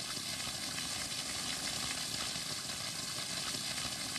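A steady, even hiss with no distinct events in it.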